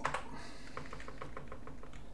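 Computer keyboard keys being pressed: one tap right at the start, then a quick, even run of about ten key presses, some eight a second, in the second half.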